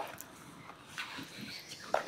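Quiet room tone in a lecture hall during a pause, with a few faint short sounds.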